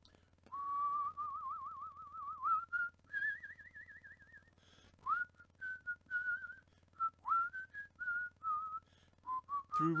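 A person whistling a tune with a wavering vibrato. Two long held notes, the second higher, are followed by a run of shorter notes, some scooped up into from below.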